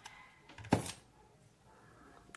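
Quiet handling of a grosgrain ribbon bow in the hands, with one short sharp rustle or tap about three quarters of a second in and a faint click near the end.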